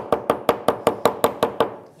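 Quick, even hammer blows, about five a second, from a nylon-faced hammer striking twisted wire against a steel swage block to flatten it. The run of blows stops just before the end.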